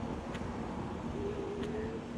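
Low, steady rumble of cars on the road nearby, with a faint hum running through it.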